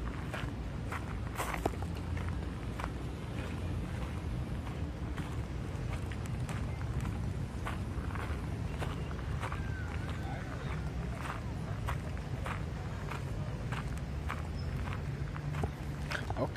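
Quick footsteps crunching on a gravel path: a long run of irregular steps over a steady low rumble.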